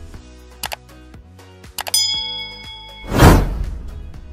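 Subscribe-button animation sound effects over background music. Two clicks come first, then a bell ding about halfway through that rings for about a second, then a loud whoosh with a deep boom near the end.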